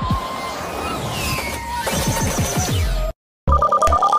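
Background music that cuts off abruptly about three seconds in. After a brief silence a telephone starts ringing with a fast, warbling electronic ring.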